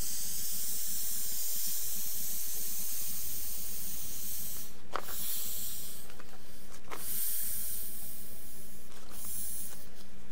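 Air hissing out of an inflatable travel pillow's valve as the pillow is pressed and rolled flat. The hiss thins briefly in the middle, and there are two short knocks, about five and seven seconds in.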